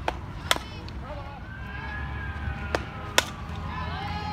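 A softball bat cracks against a pitched ball about half a second in. Two more sharp smacks follow close together near the three-second mark, over voices in the background.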